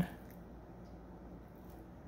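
Quiet kitchen room tone with a faint steady low hum; no distinct sound of the knife is heard.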